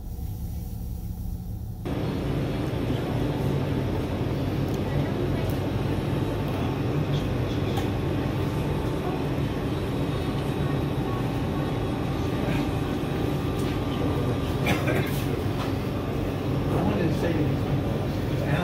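Busy restaurant room sound: indistinct background chatter over a steady low hum. It starts quieter and becomes fuller about two seconds in, with a few sharp clinks of tableware near the end.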